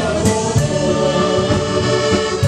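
Live accordion-led musette dance band playing: accordion over keyboard, electric guitar and drums, with voices singing along.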